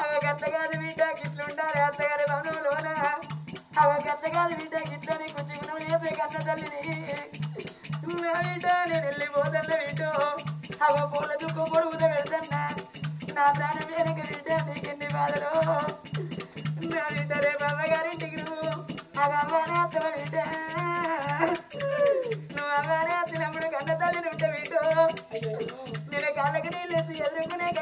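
Oggu Katha folk singing: a voice sings a long, ornamented melody in phrases of a few seconds each over steady percussion. The percussion beats about twice a second, with a rattling accompaniment.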